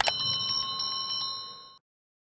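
A single mouse click, then a bright, bell-like electronic ring that trills quickly, about seven pulses a second, and cuts off cleanly just before the end. This is the click-and-bell sound effect of a subscribe-button animation.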